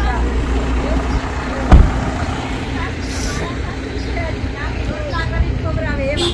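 A Suzuki Baleno hatchback's engine idling with a steady low hum, and one loud thump a little under two seconds in.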